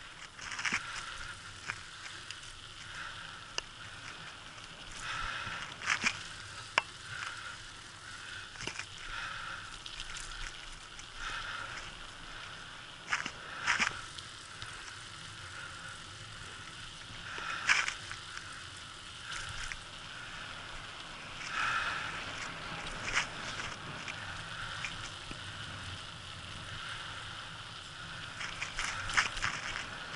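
Bicycle rolling along a rough, patched asphalt street: steady tyre and road noise broken by frequent irregular clicks and rattles as the bike goes over bumps.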